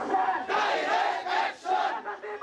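Crowd of protesters chanting slogans together, loud and in phrases with a brief pause about a second and a half in.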